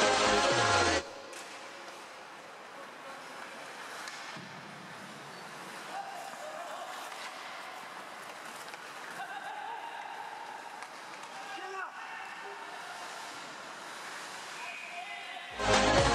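Electronic dance music cuts off about a second in, leaving the live sound of an ice hockey game: a quieter hubbub of crowd and player voices, with one sharp knock about twelve seconds in. The music comes back just before the end.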